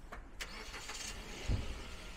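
Street noise from a car close by: a sharp click about half a second in, a short high hiss, then a low thump in the middle, over a steady low rumble.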